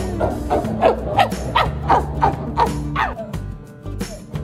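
Chimpanzees giving a rapid series of about nine short calls, each falling in pitch, roughly three a second, over background music. The calls stop about three seconds in.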